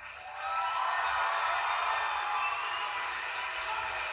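Studio audience applauding and cheering as a dance number ends, with a few whistles, heard through a TV speaker.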